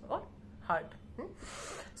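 A woman's short, soft vocal sounds, three brief murmurs, followed by an audible breath drawn in during the last half second.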